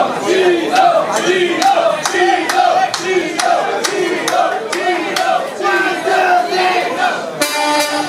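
Rhythmic hand claps, about two a second, with a group of voices repeating a short sung phrase in time. Near the end, a northern soul band with a horn section comes in.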